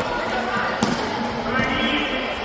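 A futsal ball struck once with a single sharp impact a little under a second in, echoing in a large hall, over the continuous chatter and shouts of players and spectators.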